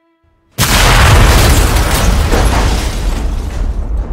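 A sudden, very loud explosion about half a second in, followed by a long, deep rumble that slowly fades: a film sound effect of an air-raid bomb blast.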